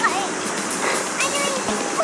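A young child's brief, high vocal sounds that glide in pitch, heard twice, over a steady wash of beach noise.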